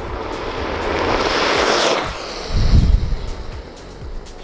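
Electric skateboard rolling past on asphalt: the wheels' rushing noise builds as it approaches and drops in pitch as it passes about two seconds in. A loud low rumble of wind on the microphone follows.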